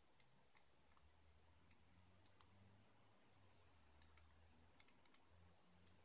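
Faint, sharp computer mouse clicks, about ten of them scattered unevenly, with a quick cluster of three near the end, as photos are paged and zoomed in a photo viewer. Under them is a faint low steady hum.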